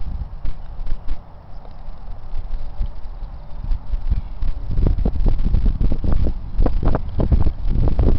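Wind rumbling on a handheld camera's microphone, with a run of short knocks and rustles from the camera being handled and carried, growing heavier and denser from about five seconds in.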